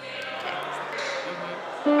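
Yamaha electronic keyboard: after a quiet stretch with a few faint clicks, a loud sustained note starts near the end.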